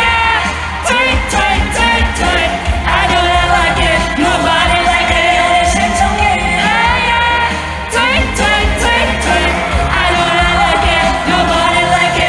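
Live pop song in an arena: a woman singing over a loud backing track with a steady, bass-heavy beat.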